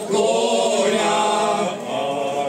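Men's folk vocal group singing a cappella in several-part harmony, holding long drawn-out notes.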